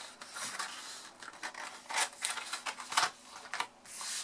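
Red cardstock gift box being closed and handled on a craft mat: card rubbing and sliding against card in a series of short scrapes, the clearest about halfway through and again near three seconds in.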